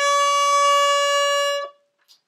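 Hexagonal German concertina, apparently a 1930s Schulz & Gundlach, sounding one steady held reed note as the bellows are drawn out. The note is the pull pitch of this bisonoric instrument, which gives a different note on the push. It stops about one and a half seconds in.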